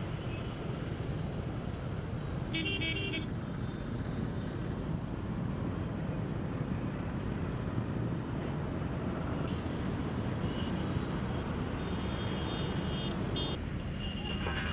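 Steady road traffic rumble, with a short vehicle horn toot about two and a half seconds in and fainter high tones later.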